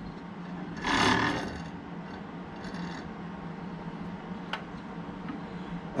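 Metal bar of a bandsaw circle-cutting fixture being slid and shifted in its holder by hand: a short rubbing scrape about a second in, a few fainter scrapes, and one light click near the end.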